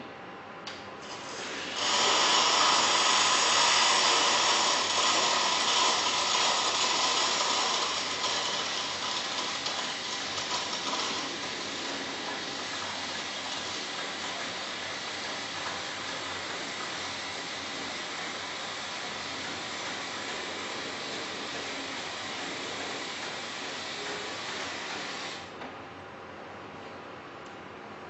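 Steam hissing through the Java WSD18-060 coffee machine's cappuccino frother as it draws milk up a tube from the jug and foams it into the cup. The hiss starts about two seconds in, is loudest at first, slowly eases off, and cuts off suddenly near the end.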